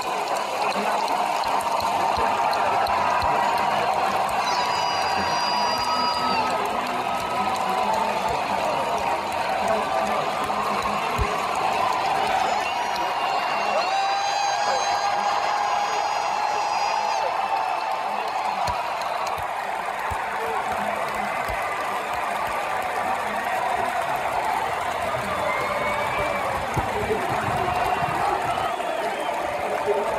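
Baseball stadium crowd cheering and chattering, a steady wash of many voices, with a few longer held shouts rising above it.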